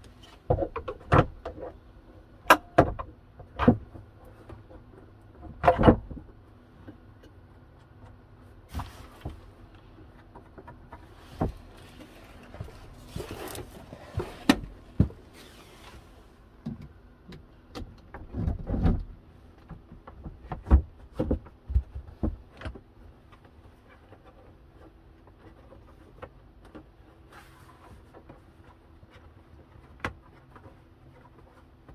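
Hard plastic knocks, bumps and clunks as a composting toilet is put back together: the base with its crank handle is set into place, and the top section is lowered onto it and fastened. The knocks come in irregular clusters over the first twenty seconds or so and then grow sparse.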